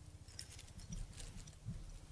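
Faint, scattered light metallic clinks and ticks from a thurible and incense spoon as incense is put on, over a low steady hum.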